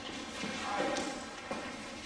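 Faint, indistinct talk with two light knocks, about a second in and again half a second later.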